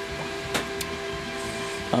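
Steady hum of electric fans running, with two sharp plastic clicks near the middle as a circuit-breaker block is handled.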